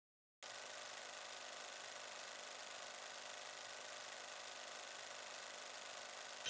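Faint steady hiss with a faint low hum, the bare noise floor of the recording, starting after a split second of dead silence at a cut.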